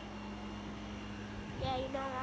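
A steady low hum from an unseen machine, with a brief low bump about one and a half seconds in. A child's voice starts near the end.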